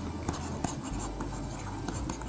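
A pen stylus scratching on a drawing tablet as a word is handwritten, with a few light ticks between strokes.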